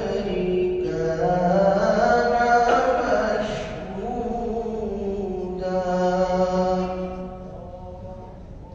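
A man reciting the Quran melodically in the tajweed style, drawing out long held notes that glide slowly in pitch, fading near the end.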